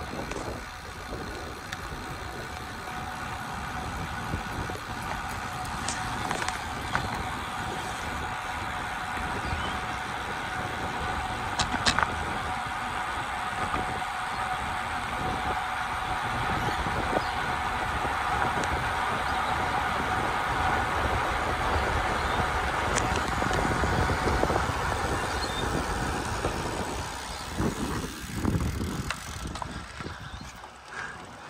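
Wind rushing over a bike-mounted camera's microphone, with road bike tyres running on asphalt while riding. It grows louder through the middle and eases off near the end, with an occasional sharp click.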